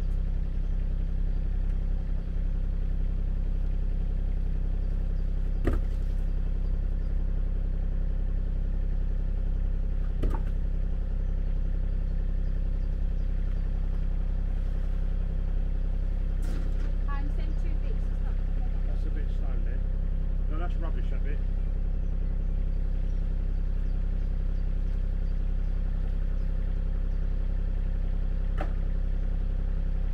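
Mini excavator's diesel engine idling steadily. A few sharp knocks, of stones being handled, come about six, ten and twenty-nine seconds in.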